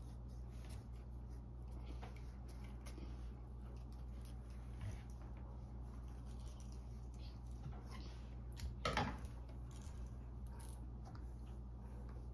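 Scissors cutting a thin bamboo skewer: faint, scattered snips and clicks over a steady low room hum, with one brief louder sound about nine seconds in.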